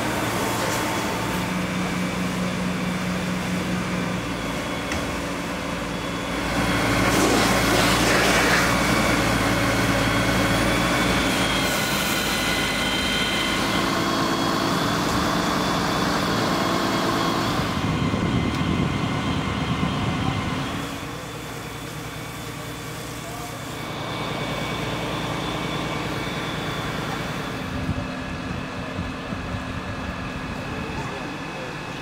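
Fire engine running steadily with its pump feeding the firefighters' hose, under a constant rushing noise that grows louder for about five seconds a quarter of the way in.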